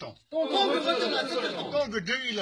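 A group of men's voices reciting an oath together in unison, phrase after phrase, with a short break about a quarter second in.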